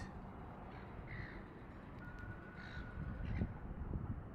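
A few short animal calls, crow-like, over a low steady background rumble. A thin steady whistle-like tone is held for about a second and a half past the middle.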